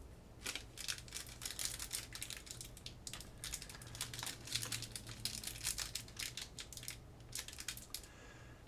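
Foil wrapper of a Magic: The Gathering collector booster pack crinkling and crackling in the hands in irregular bursts as it is worked at to tear it open. The pack has no tear tab, so it resists opening.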